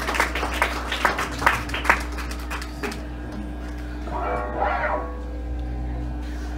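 Scattered clapping from a small club audience at the end of a song, thinning out after about two or three seconds, over a steady electrical hum from the stage amplifiers. A short voice-like shout or whoop comes about four seconds in.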